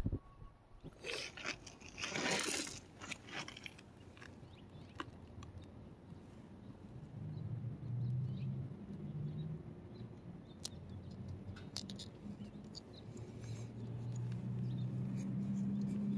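Faint handling noise from applying a vinyl decal to a wheel rim: two brief rustles early on, then scattered light clicks and taps, over a low steady hum.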